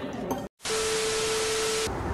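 A burst of static-like hiss with a steady mid-pitched tone running through it, lasting just over a second. It starts abruptly after a split-second dropout and cuts off just as abruptly: an edited-in static transition effect between two clips.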